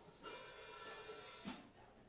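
A drum-kit cymbal struck once, ringing for about a second, then a single sharp hit on the kit that fades quickly.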